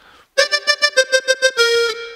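A toy electronic keyboard with a reedy tone plays the same note in quick repeats, about seven a second. Near the end it holds one slightly lower note.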